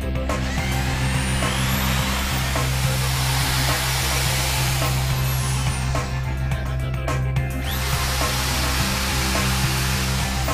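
Hand-held electric drill boring through a chromoly steel airframe tube, running in two stretches with a short break about six seconds in, over background music.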